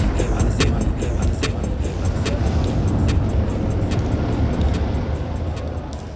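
Hip-hop track with heavy bass and a steady beat playing over a venue's loudspeakers, fading down near the end.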